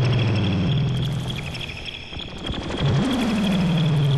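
A solo male voice chanting in Zulu: two long calls, each starting high and sliding down in pitch before breaking into shorter syllables, with the second call about three seconds in. A steady, faintly pulsing high tone runs underneath.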